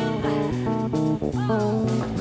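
Live band playing an instrumental passage: plucked guitar and electric bass guitar notes over a held low bass note, with a note bending in pitch near the end.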